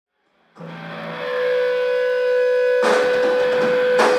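Live metal band opening a song: a single sustained electric guitar tone swells in and holds at one steady pitch, then the drums come in with a cymbal wash about three seconds in.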